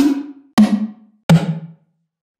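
Three sampled tom hits, each a sharp thud with a short ringing tone, stepping down in pitch from one hit to the next. The toms are built in a sampler from a recording of tonic water being poured, re-pitched and roughened with distortion and EQ.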